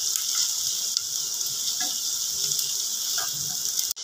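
Sliced onions sizzling in melted butter in a saucepan, a steady hiss, with a few light scrapes as a silicone spatula stirs them. The sizzle cuts out abruptly just before the end.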